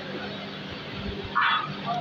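Steady low hum of the running distillery plant's machinery, with one brief, unidentified sharp sound about one and a half seconds in.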